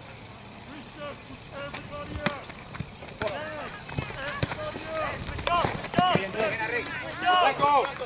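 Soccer players shouting short calls to each other during play, the shouts growing busier from about three seconds in, with a few sharp thuds of the ball being kicked among them.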